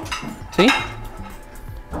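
Metal tongs clinking and scraping against a large aluminium pot as slices of bread are laid into a little oil to brown.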